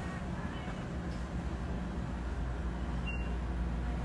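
Steady low hum of shop ambience with faint voices in the background, and a short high beep about three seconds in.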